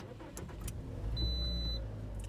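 Low, steady rumble of a car engine idling, heard from inside the cabin, with a few faint clicks in the first second.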